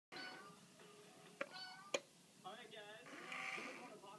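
Several short meows and two sharp clicks as a cat paws at a mechanical kitty coin bank. Near the end a steadier, higher whir sets in as the bank's lid opens.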